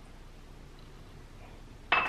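Quiet room tone, then near the end a small whiskey glass set down on a granite countertop with a short clink.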